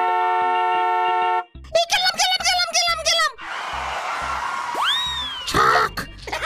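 A car horn sounding one long steady two-tone blast that cuts off about a second and a half in, followed by a cartoon character's voice. Then comes a whooshing cartoon sound effect with a whistle that rises and falls, and a short hit near the end.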